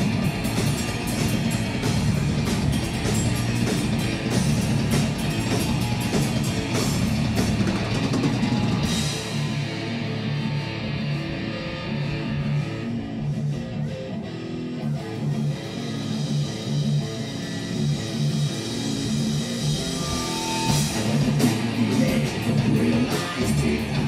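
Live rock band, two electric guitars, bass and drum kit, playing an instrumental passage with no vocals. About nine seconds in the drums and the deep bass drop out, leaving a guitar riff on its own, and the full band comes back in near the end.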